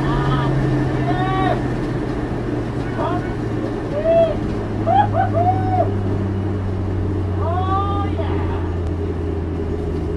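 Skoda Octavia vRS's turbocharged four-cylinder engine heard inside the stripped, caged cabin, its note falling slowly and steadily as the car slows down after its high-speed run. The driver's laughs break in over it several times.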